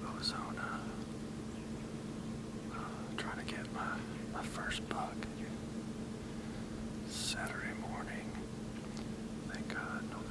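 A man whispering to the camera in short, breathy phrases, over a steady low electrical-sounding hum.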